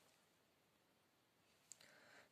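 Near silence, broken near the end by one faint click and a brief soft rustle as a ruled paper notebook is laid down on a printed question paper.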